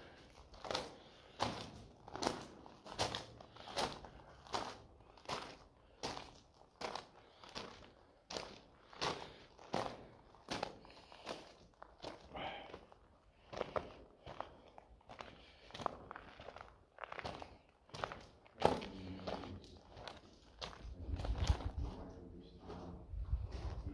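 Footsteps crunching on loose gravel at a steady walking pace, a little over one step a second, with one louder crunch near the end.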